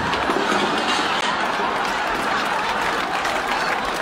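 Sitcom studio audience laughing and applauding, a steady dense crowd sound.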